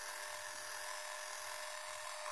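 Electric facial cleansing brush buzzing steadily, a constant motor hum with one even tone.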